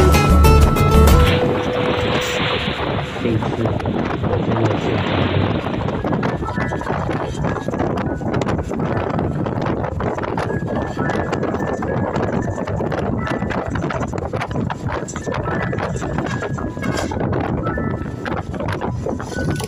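Music cuts off about a second in, giving way to steady rattling road noise and wind from a moving vehicle, full of rapid irregular clatter.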